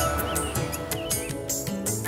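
Background music with small birds chirping over it in quick, short chirps.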